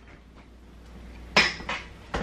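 Kitchenware clinking: one sharp clack a little over halfway through, followed by a lighter one, over a faint steady hum.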